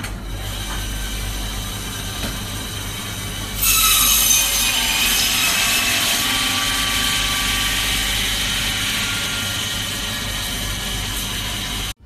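Electric meat band saw running with a steady hum, then from about three and a half seconds in a louder, harsher grinding as the blade cuts through a bone-in beef rib roast. The sound stops abruptly at the end.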